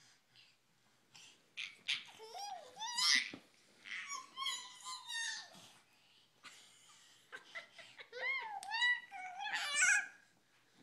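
A toddler's high-pitched squealing giggles and laughs, in two spells: one starting about a second and a half in, and another from about seven seconds in to the end.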